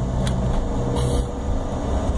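Cabin noise of a regional jet taxiing after landing: a steady low rumble from the idling jet engines and rolling airframe, with a faint steady whine and a brief hiss about halfway through.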